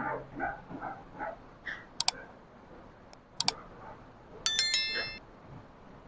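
Two sharp clicks, then near the end a brief, high metallic bell-like ring made of several quick strikes lasting under a second, with faint murmuring at the start.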